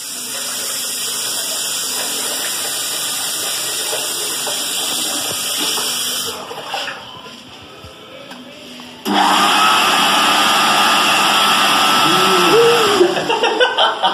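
Electric hand dryer in a tiled washroom starting abruptly and running loudly for about four seconds with a steady motor whine, then cutting off. A man laughs near the end.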